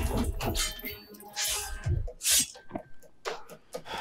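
Sword-fight scene's soundtrack playing at low volume: scattered short hits and a few brief noisy swishes.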